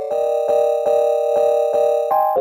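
A sampled keys chord pattern playing back in a loop from the Maschine 3 software: one held chord struck again about four times a second at 120 BPM.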